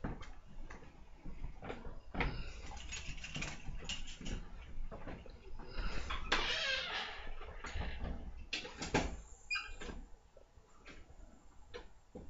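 A man puffing on a Kaywoodie briar tobacco pipe: small lip pops and clicks on the stem, with soft breathy draws and exhales of smoke, the clearest exhale about six seconds in.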